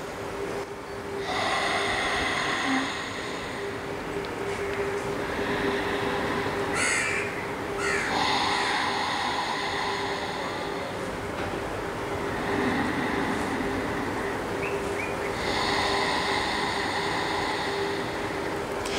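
Ujjayi breathing: slow, deep breaths drawn in and let out through a narrowed throat, each a strong rushing hiss lasting about three seconds, about five in a row.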